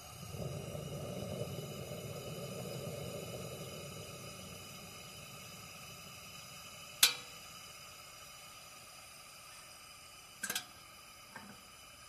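Camping lantern burning with a faint steady hiss and a low rushing swell over the first few seconds that dies away. A sharp click comes about seven seconds in, and a quick double click and a small tick come near the end.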